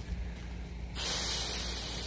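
Pistol-grip garden hose nozzle squeezed open about a second in, then a steady hiss of water spraying out, pressurised by a battery-run pump drawing from a rainwater tank.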